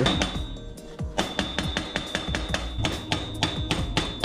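Hammer blows on a punch set against a bicycle's bottom bracket, a quick, even series of metal strikes starting about a second in, to loosen the stuck part.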